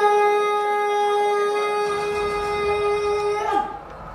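A single long held note, sung or blown, bright and steady in pitch, after a short run of sliding notes, stopping about three and a half seconds in.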